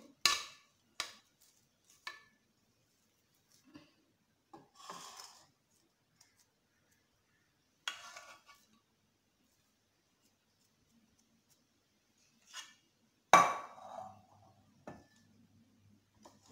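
A metal spoon scraping and knocking against a nonstick pot and a plate while mashed potatoes are served out, in scattered short knocks with long quiet stretches between; the loudest knock comes about 13 seconds in.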